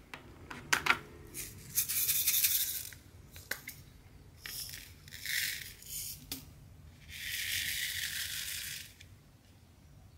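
Crinkly rustling of the clear plastic cover film on a diamond painting canvas as it is handled and peeled back, in three separate stretches of a second or two each. A few light clicks come near the start.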